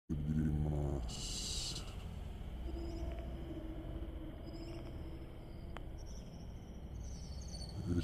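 Outdoor street ambience with a low steady rumble. A short voice and a brief hiss come in the first two seconds, and a single click sounds near six seconds in.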